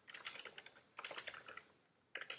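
Typing on a computer keyboard: two short runs of keystrokes, each about half a second long.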